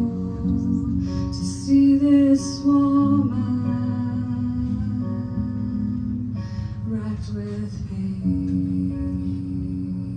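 A song performed live: singing over electric guitar, with long held notes.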